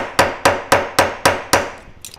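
Small hammer tapping the head of an aluminium wire rivet against a steel block in quick, even strokes, about three or four a second, each with a short metallic ring. The strokes peen the rivet head to a hand-hammered texture, and they stop about a second and a half in.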